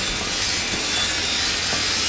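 Sound effect of an animated logo intro: a steady rasping, grinding noise, like sawing or metal being ground.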